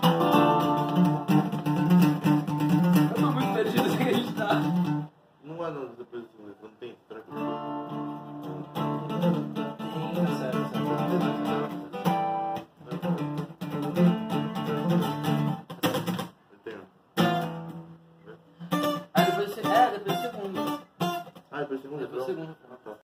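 Acoustic guitar strummed in chords. The playing stops a few times, the longest break coming about a third of the way in, and starts again each time.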